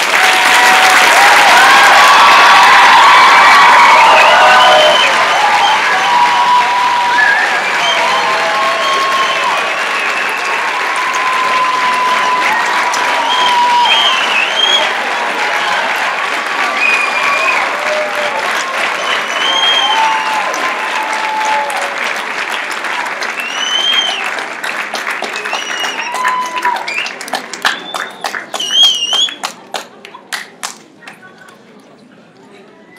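Audience applauding, loudest for the first four or five seconds, with voices calling out over the clapping. Near the end the applause breaks up into scattered single claps and dies away.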